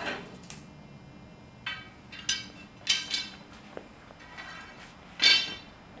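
Metal support poles being pulled from a puppet base, clinking and ringing as they knock against each other and the frame: about seven sharp, irregular metallic clinks, each with a brief ring, the loudest near the end.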